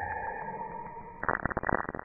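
NASA space recording of electromagnetic (plasma wave) signals converted to sound, presented as the sound of Saturn's rings. Steady, pulsing electronic tones fade out, then a little over a second in they break abruptly into dense, irregular crackling and popping.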